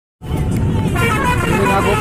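Vehicle engine and road rumble heard from on board a moving vehicle, starting a moment in, with voices talking over it from about a second in.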